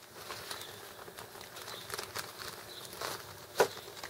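Quiet outdoor background with a few faint clicks and rustles of fishing tackle being handled, and one louder click about three and a half seconds in.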